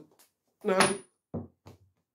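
A man's voice: a drawn-out exclamation of "no", followed by two short vocal sounds.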